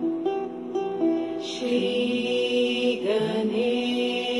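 Meditation music with chanted mantras: slow, held notes that move in steps, with no break.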